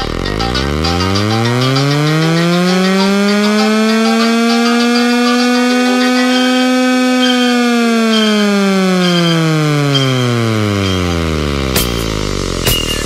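A single electronic DJ-remix sound effect: one tone slides up from very low over about four seconds, holds for a few seconds, then slides slowly back down. A sharp click comes near the end.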